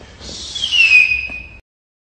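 A whistling-rocket firework sound: a rushing hiss, then a loud whistle that falls steadily in pitch for about a second before cutting off abruptly into silence.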